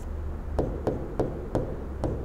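A series of light, sharp clicks, about three a second, from the input device as Arabic letters are drawn stroke by stroke with an on-screen pen tool, over a steady low hum.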